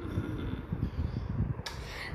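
Low, uneven rumbling noise on the microphone, with a short hissing breath about one and a half seconds in.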